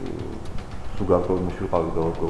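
Speech only: a man talking in Georgian on a covertly made audio recording, with a steady low hum under the voice.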